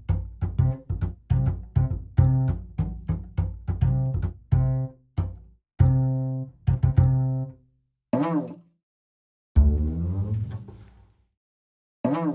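Sampled acoustic double bass of the UJAM Virtual Bassist Mellow plugin, played from a keyboard: a run of short plucked notes at about three to four a second, then a few longer notes, one bending in pitch, and a last note ringing out and fading.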